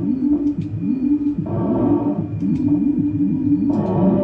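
Live electronic noise music from a synthesizer and effects rig: a low tone sweeping down in pitch over and over, about twice a second, with patches of higher hiss about a second and a half in and near the end.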